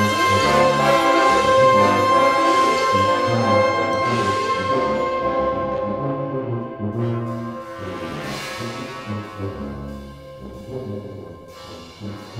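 Full brass band playing: a long high note held over moving low-brass figures. The band grows gradually quieter, the held note dropping away about halfway through, leaving a soft passage.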